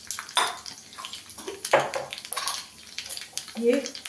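Black mustard seeds sizzling in hot oil in a small tempering pan, with irregular crackles and pops.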